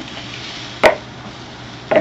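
A single sharp knock of a wooden spoon about a second in, over a steady low hiss, as a wet salsa-and-vegetable mixture is scraped from a bowl into a skillet.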